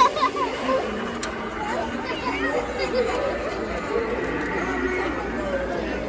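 Indistinct speech and chatter of several people, with laughter at the very start.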